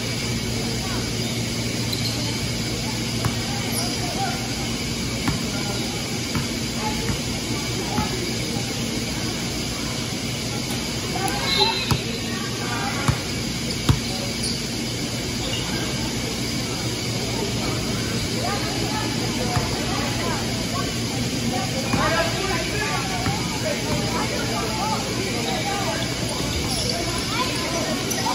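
Gymnasium sound during a basketball game: players and spectators talking in the background over a steady hum from the hall. Two sharp knocks about a second apart come halfway through.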